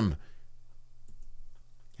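A short pause in a man's speech, filled by a few faint small clicks over a low steady hum.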